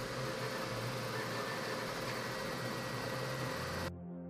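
Elegoo Centauri Carbon CoreXY 3D printer running a print: a steady whir of fans and motion with a faint steady whine. It cuts off suddenly just before the end.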